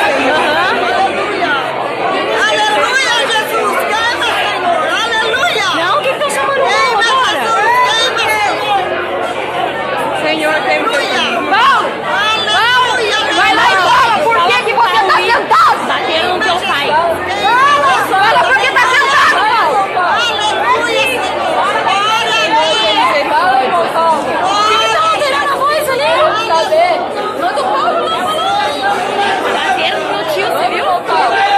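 A crowd of many people talking and shouting over one another in a reverberant church hall: the uproar of a scuffle breaking out in the congregation, heard through a phone recording.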